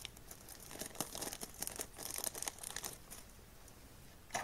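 Small clear plastic zip bag crinkling as it is handled and opened, a run of crackles that thins out about three seconds in.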